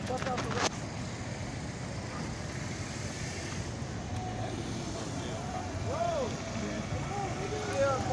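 Steady low rumble of street traffic, with a car moving through near the end. A few short voice sounds come in over the last two seconds.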